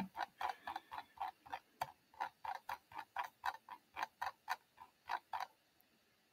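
A quick, even run of about twenty light clicks at a computer, roughly four a second, stopping about five and a half seconds in. It is the sound of paging rapidly through presentation slides to reach the right one.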